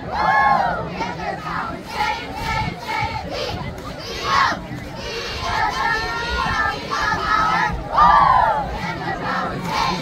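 Middle school cheerleaders shouting a cheer in unison, high girls' voices in rhythmic call bursts. The loudest shouts come right at the start, about four seconds in and about eight seconds in, over the general noise of the crowd.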